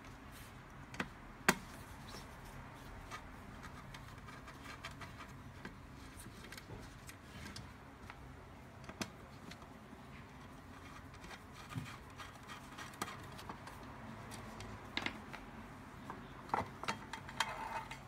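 Scattered faint clicks and taps of gloved hands unscrewing mounting bolts and lifting a battery box cover off a metal plate, the sharpest click about a second and a half in and a cluster near the end, over a faint low steady hum.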